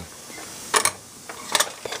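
Small clicks from handling a Yaesu VX-7R handheld radio and its interface cable plug: a close pair about three-quarters of a second in, then a few more near the end.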